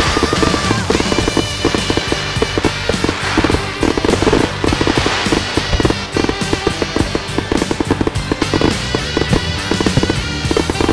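Fireworks going off in a rapid, dense run of bangs and crackles, with music playing throughout.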